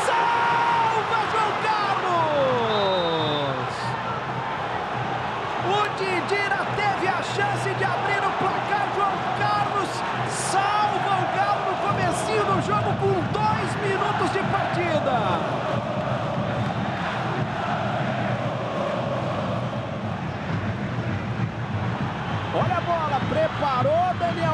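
Football stadium crowd singing and shouting. A couple of seconds in comes a long falling collective cry.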